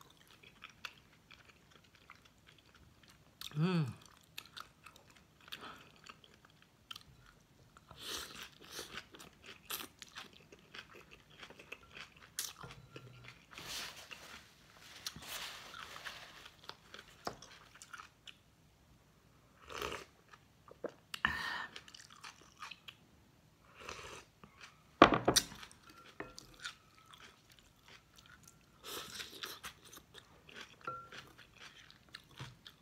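A person eating a bowl of pho close to the microphone: chewing and slurping rice noodles and broth in irregular bursts, the loudest about 25 seconds in. A short falling hum a few seconds in.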